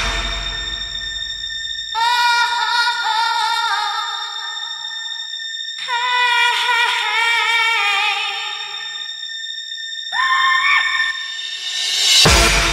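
Breakdown in a hard house DJ mix: the beat drops out and a vocal line sings long held notes in two phrases, with a short rising phrase near the end, over thin steady high synth tones.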